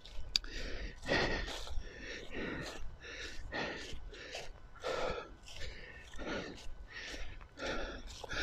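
A walker's breathing and steps on grass, close to the microphone: soft, short puffs of sound about two a second.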